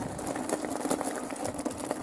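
Electric unicycle rolling over loose gravel: a scattered crackle of stones under the tyre with a faint steady motor hum.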